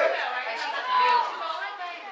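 Overlapping voices chattering and calling out, several people at once.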